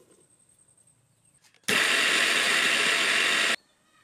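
Electric mixer grinder running in one short burst of about two seconds, starting and stopping abruptly at a steady loud level, grinding a white powder.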